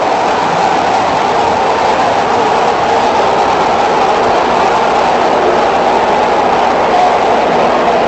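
Stadium crowd noise: a steady, dense wash of many voices with no breaks, heard through a dull-sounding old television broadcast recording.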